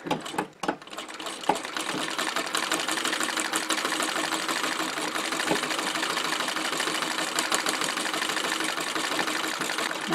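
Singer 15K treadle sewing machine running darning stitches back and forth across a sock heel. After a few handling knocks it starts up about a second in and keeps a fast, even stitching clatter.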